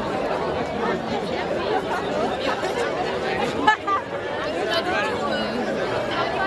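Crowd chatter: many people talking at once in a dense, steady babble, with one brief louder sound standing out a little past halfway.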